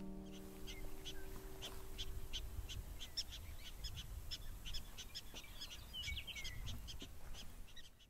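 The last chord of a 1946 Epiphone Triumph archtop guitar dying away over the first couple of seconds, then prairie dogs chirping repeatedly in short sharp calls, over a low rumble.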